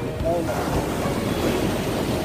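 Rough surf breaking and washing up a sand beach, with wind on the microphone.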